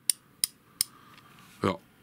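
Proxxon 1/2-inch 52-tooth ratchet clicking three times, about a third of a second apart, as its handle is turned slowly and the pawl skips over the gear ring.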